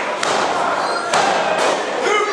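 Thuds on a wrestling ring's canvas, one near the start and another about a second later, over crowd voices. This is the referee's hand slapping the mat to count a pin.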